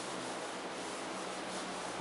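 Chalk being wiped off a blackboard: a steady dry rubbing as the board is erased.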